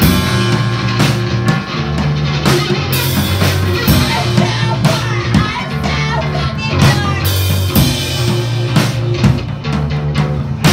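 Live band playing a song on drum kit, electric guitar and keyboard, loud, with repeated drum and cymbal hits over sustained low notes.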